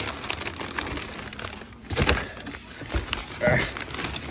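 White packing paper rustling and crinkling as paper-wrapped metal sluice-stand legs are handled inside a cardboard box, with a couple of dull knocks about two and three seconds in.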